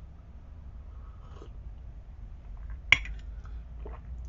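A steady low background rumble, with one sharp click about three seconds in.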